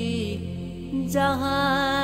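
Naat, an Urdu devotional song: a solo voice sings long held, slightly wavering notes over a steady low drone. A new phrase starts about halfway in, with a soft swish.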